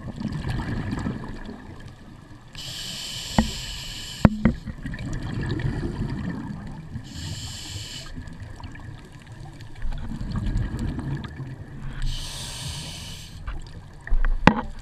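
A scuba diver breathing through a regulator underwater. Three spells of high hissing as air is drawn in alternate with low rumbling bubbles as it is breathed out, about one breath every four to five seconds. Two sharp clicks come near the middle.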